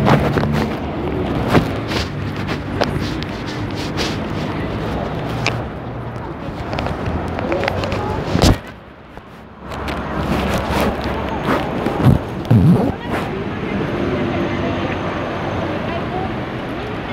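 Handling noise from a phone's microphone, with repeated scrapes and knocks as it is moved and covered, over steady street traffic. The sound drops away sharply for about a second near the middle, when the microphone is muffled.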